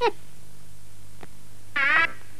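A mostly quiet gap with a faint steady hum, opened by a short falling voice-like sound and closed by a brief, wavering, meow-like cartoon voice sound in the last moment, with a single click in between.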